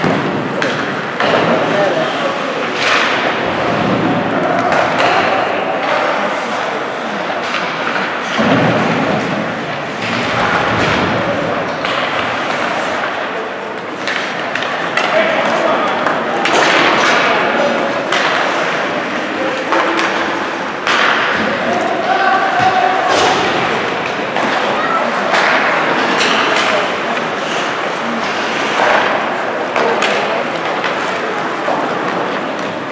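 Ice hockey play in a rink: repeated sharp knocks of pucks and sticks on the boards and ice, with voices shouting from the players and the bench.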